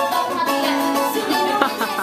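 A twelve-string acoustic guitar played live, its plucked notes ringing in a steady stream of music.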